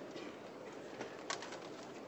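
Faint room noise of a conference hall after a session ends: low, indistinct murmur and movement, with one sharp click a little over a second in.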